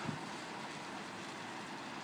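Steady road-traffic noise with no distinct events.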